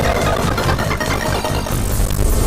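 Video slot game audio: a dense win-payout sound effect over the game's music while a winning line tallies up.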